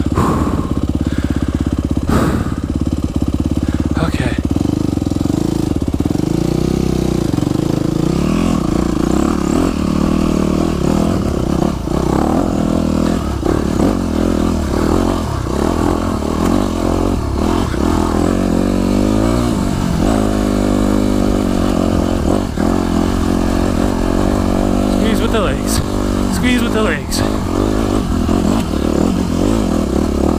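Yamaha YZ250F's four-stroke single-cylinder engine running hard, its revs rising and falling with the throttle.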